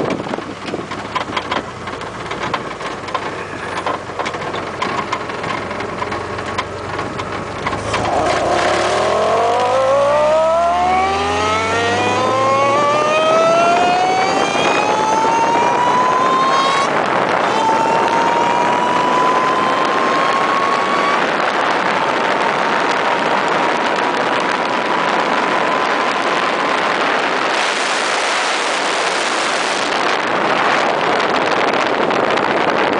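Ariel Atom's four-cylinder engine accelerating hard, its pitch climbing steeply from about eight seconds in, with a gear change about seventeen seconds in and a longer, slower pull after it. Heavy wind rushes over the open cockpit throughout.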